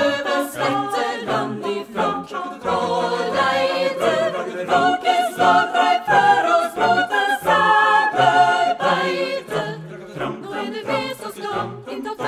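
A cappella choir singing in close harmony with no instruments, a low bass part moving under the upper voices in short rhythmic syllables.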